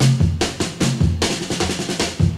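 Northern soul record intro: a busy drum fill of rapid snare and bass drum strikes over a low bass line.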